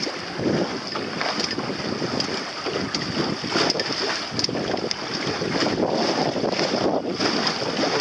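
Wind buffeting the microphone over the rush and slap of choppy seawater against a small moving boat, swelling and easing irregularly.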